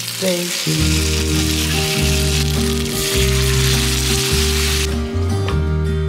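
Meat patties sizzling as they fry in a nonstick pan, over background music with a steady bass line. The sizzle cuts off abruptly near the end.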